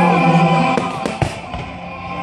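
Fireworks display: a few sharp bangs in quick succession about a second in, over music with steady held notes.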